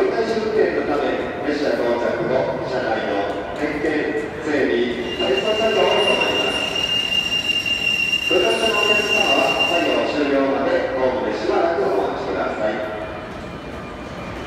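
Kintetsu 22000 series ACE electric train pulling into a platform, with a steady high-pitched squeal held for about five seconds in the middle as it slows. A voice can be heard throughout.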